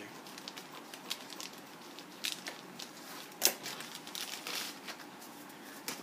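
Thin clear plastic bag crinkling and rustling as it is cut open and a plastic model-kit sprue is slid out, with scattered sharp crackles, the loudest about halfway through.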